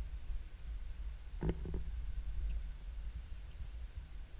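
Low, steady rumble of wind buffeting a handheld camera's microphone, with a short voice sound about one and a half seconds in.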